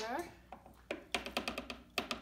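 A quick run of light, sharp taps, about eight or nine a second, in the second half.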